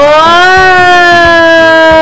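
A single voice holding one long, steady note, rising a little at the start and then sinking slowly for about two and a half seconds.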